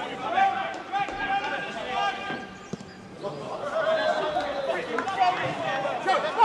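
Men's voices shouting and calling out across a football pitch during play, with a couple of short thuds.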